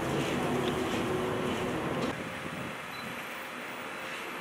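Steady rumbling background noise with faint, indistinct voices mixed in. It drops abruptly to a quieter hum about two seconds in.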